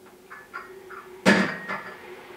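Kitchen wall cupboard being handled: a few light knocks, then one loud bang of the cupboard door shutting a little past the middle.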